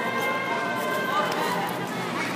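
Voices of spectators and coaches shouting and calling out during a taekwondo sparring bout, with a few short knocks of bare feet and kicks on the foam mats and body protectors.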